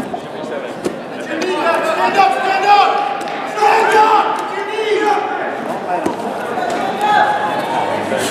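Several voices shouting and calling out at once in a large reverberant hall, louder from about a second and a half in, with a few short thuds among them.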